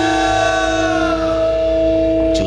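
Javanese gamelan letting a phrase ring out: the bronze keys and gongs hold several long, steady, sustaining notes, while the higher overtones slide slightly down and fade over the first second or so.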